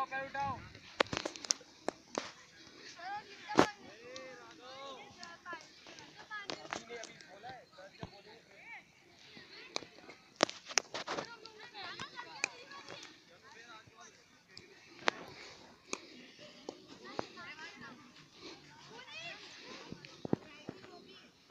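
Children's voices calling out and chattering, with about a dozen sharp, sudden smacks scattered through, the loudest about three and a half seconds in: footballs being kicked.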